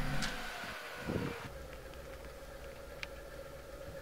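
Music fading out, then a car engine running faintly and steadily at low revs, with one short louder sound about a second in and a single click near three seconds.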